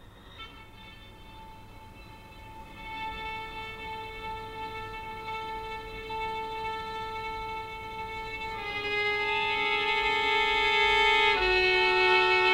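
Solo violin bowing long, slow held double stops, two notes sounding together. The lower note steps down twice in the second half, and the playing swells steadily louder toward the end.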